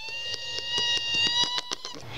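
A high-pitched voice holds one long note for nearly two seconds, rising slightly in pitch, over a run of rapid clicks.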